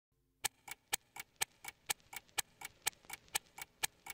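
Quiet, steady clock-like ticking, about four ticks a second alternating strong and weak, like a tick-tock.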